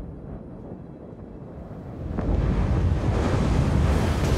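Wind and rough sea: a low, rushing rumble that swells louder about two seconds in.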